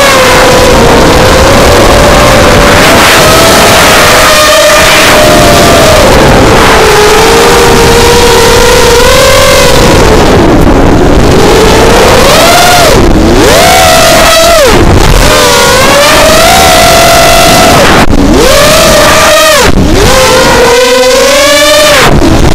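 Bantam 210 racing quadcopter's brushless motors and propellers heard from its onboard camera: a loud whine whose pitch rises and falls with the throttle, dipping sharply several times in the second half.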